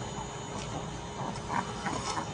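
A cat making a few brief, faint vocal sounds over a low background hiss.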